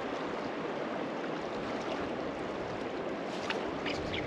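Shallow river water running over a rocky bed: a steady rushing, with a few faint clicks near the end.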